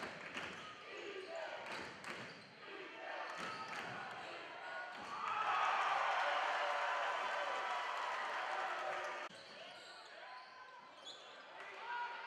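Game sound from a basketball game in a gym: a ball bouncing on the hardwood among voices of players and spectators. About five seconds in, the crowd voices get louder for a few seconds and then cut off abruptly a little after nine seconds.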